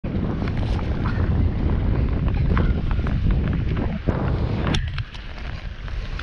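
Wind buffeting the camera microphone, a heavy low rumble that drops away about five seconds in, with a sharp click just before it does.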